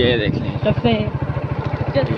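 Motorcycle engine running steadily while riding, a fast even beat of firing pulses underneath, with brief voices over it.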